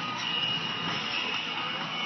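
Steady rolling noise of a six-horse hitch and freight wagon moving over a dirt arena, hooves and wagon blending into an even rumble.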